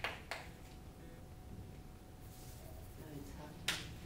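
Chalk tapping on a chalkboard, the last of a quick run of taps just after the start, then faint room noise with a brief sharp sound near the end.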